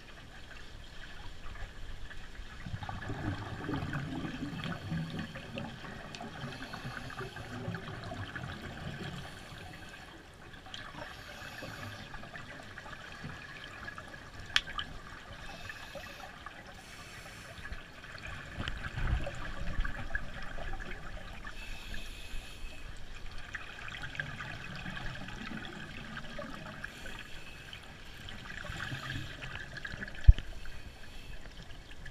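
Muffled underwater sound of a swimming pool heard through a camera housing: water moving, with a burst of scuba regulator exhaust bubbles every five or six seconds. There is one sharp click about halfway.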